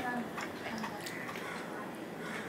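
Cooked rice being tipped from a stainless-steel bowl onto a steel plate and pushed by hand, with a scatter of light clicks and taps.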